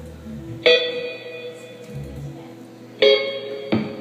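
Guitar chords struck and left to ring out: one about a second in, then two more close together near the end, each fading slowly.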